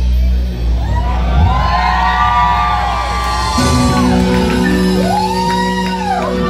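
Live rock band playing loud: drums, bass and electric guitar, with long high notes that slide up and then back down twice, and the crowd shouting over the music.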